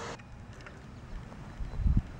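Wind rumbling on the microphone, a low, uneven noise that swells near the end.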